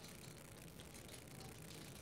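Near silence: faint, steady room tone with no distinct event.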